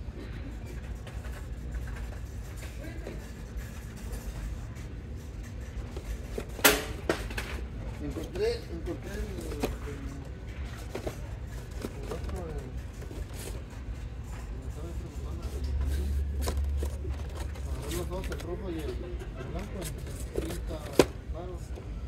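Indoor store background: a steady low hum with faint, indistinct voices. A few sharp knocks stand out, the loudest about seven seconds in and another near the end.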